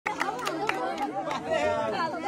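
Crowd chatter: several voices talking over one another at close range, with a few short clicks in the first second or so.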